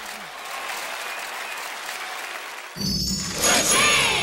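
Applause from a crowd, an even clapping patter, cut off about three seconds in by a short musical logo sting: a low note and bright ringing chime tones.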